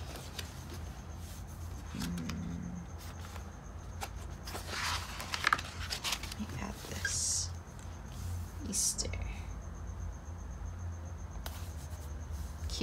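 Paper rustling as pages of a discbound planner are flipped and handled, in a few short rustles through the middle of the stretch, with a brief low hummed murmur about two seconds in.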